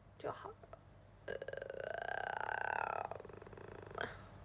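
A woman's voice: a brief murmur, then a drawn-out, low, rattly vocal sound, like a creaky hum or a burp, lasting nearly two seconds and trailing off.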